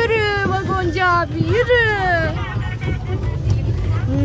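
A high-pitched voice making wordless drawn-out sounds in the first couple of seconds, the last one gliding down in pitch, over the steady low rumble of a trackless tourist train ride moving along.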